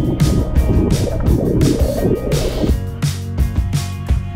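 Background music with a steady beat, under a rushing, bubbling water sound that fades out near three seconds in.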